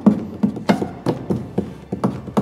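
A series of sharp knocks or taps, several in two seconds, unevenly spaced.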